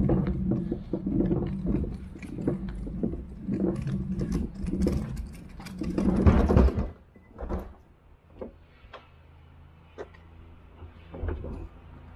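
Mechanical rattling and clattering over a steady low hum for about seven seconds, then much quieter, with a few scattered knocks.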